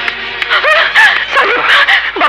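A person's voice wailing over film background music, its pitch sliding up and down in long glides.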